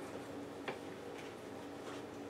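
Faint, scattered light clicks from an aluminium crochet hook working yarn, one a little sharper about two-thirds of a second in, over a faint steady hum.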